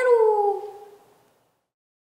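A young woman's voice drawing out the last word of a fan chant, '그대로~', as one long sing-song vowel that slides down in pitch and fades out about a second in.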